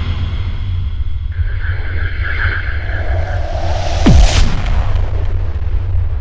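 Cinematic logo-intro sound design: a deep, steady rumble that swells into an explosion-like boom about four seconds in, with a falling pitch sweep at the hit, then the rumble carries on.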